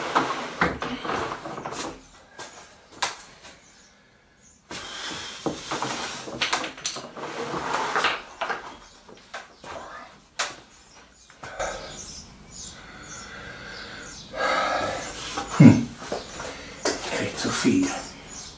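Solid oak boards being lifted, shifted and stood on edge on a wooden table: a run of wooden knocks, clatters and scrapes, the loudest knock coming about three-quarters of the way through.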